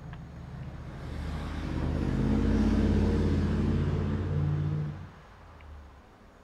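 A motor vehicle passing by: its engine sound swells over a couple of seconds, peaks near the middle, and fades away about a second before the end.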